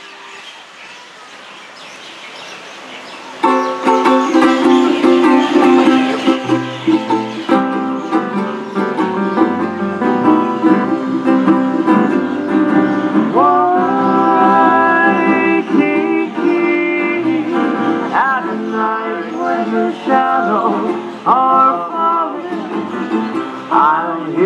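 A small Hawaiian band with ukulele and upright bass plays the instrumental introduction to a slow Hawaiian ballad; the music starts about three and a half seconds in, and several notes slide in pitch.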